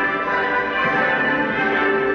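A national anthem played by an orchestra with brass, held notes in a steady, full sound.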